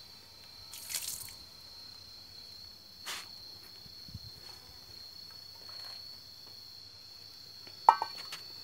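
Water poured out of a frying pan splashes briefly about a second in, followed by a faint knock around three seconds. Near the end the metal pan is set down on stone paving with a sharp, ringing clank, the loudest sound. A steady high-pitched insect buzz continues in the background.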